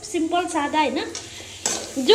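Metal spatula stirring and scraping masala paste as it fries and sizzles in a steel kadai, with a louder scrape near the end. The spice masala is being fried for a fish curry.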